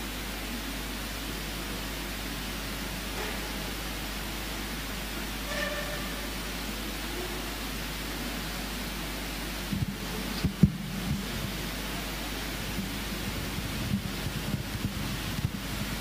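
Steady hiss from the church sound system with no one speaking, broken about ten seconds in by a cluster of bumps and one sharp knock, then scattered small clicks near the end: a microphone being handled and swapped at the pulpit.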